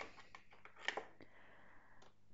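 Faint scraping and light clicks of a small brush picking up acrylic paint from a plastic palette, with one sharper click about halfway through.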